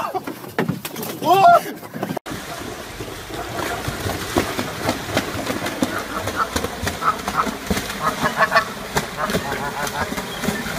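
Two short cries, then after a sudden cut a steady wash of splashing water as a swan surges across a river chasing another bird. Many short splashes and repeated short calls run through the splashing.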